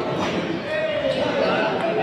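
Table tennis ball making sharp clicks off the paddles and table during a rally, over background chatter in a reverberant hall.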